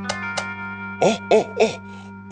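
Three short coughs from a character's voice about a second in, over background music with held tones; a few sharp clicks come just before.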